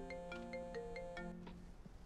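Mobile phone ringing with a melodic ringtone: a quick tune of short stepped notes that stops about one and a half seconds in.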